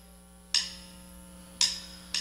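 Two sharp ticking clicks about a second apart over a low steady hum.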